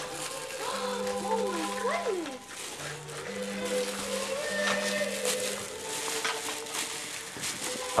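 Plastic bag wrapping crinkling and rustling as a dog noses at it and hands pull at it. Underneath are steady held low notes, like background music, and a few short rising-and-falling vocal sounds in the first two and a half seconds.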